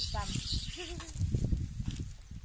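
People talking nearby in short, indistinct phrases, over a low rumble.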